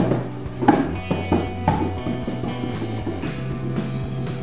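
Background music with drums over held low bass notes.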